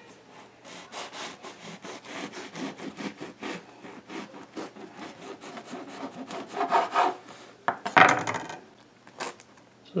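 Knife sawing back and forth through a freshly baked plaited bread loaf on a wooden cutting board, a quick run of rasping strokes. Louder scrapes come near the end as the slice is cut through and comes free.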